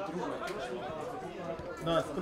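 Indistinct chatter: several voices talking at once in the background, with no single clear speaker.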